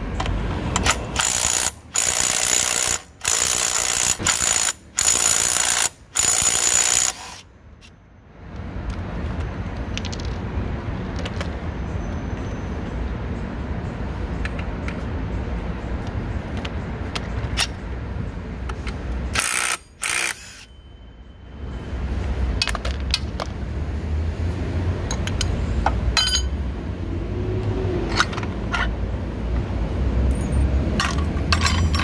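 A cordless impact wrench hammers at the 17 mm nut on a scooter's CVT clutch bell in a series of short, loud bursts over the first seven seconds, with one more burst about twenty seconds in. In between are lighter clicks and clinks of tools.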